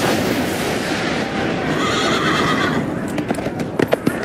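Horse sound effect: a horse whinnying, followed near the end by a few sharp hoof strikes.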